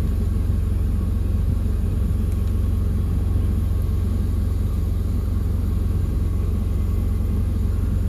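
Steady low rumble of a truck engine idling, heard from inside the cab.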